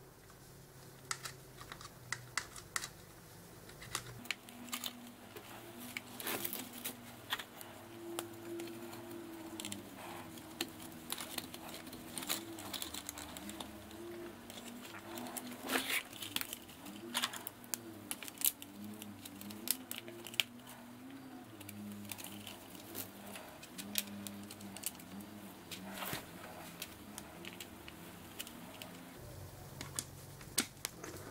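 Irregular clicks and taps of small plastic parts being handled and pressed together as the front end of a Tamiya TT-01 radio-controlled car chassis is reassembled by hand.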